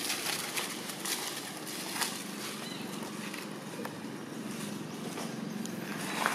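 Dry leaf litter rustling and crackling as macaques move over it, a steady hiss with a few sharp crackles.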